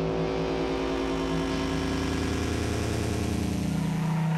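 A steady, low, engine-like drone held at one pitch, with a hiss over it.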